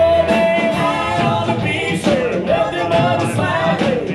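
Live country band performing a song: a male lead singer holding long sung notes over strummed acoustic guitar and a drum kit.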